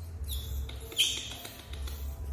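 Baby macaque giving short high-pitched squeaks, the loudest a sharp falling squeak about a second in.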